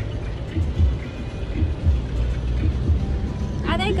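Low, steady road and engine rumble inside the cabin of a moving car, with tyre noise on a wet road.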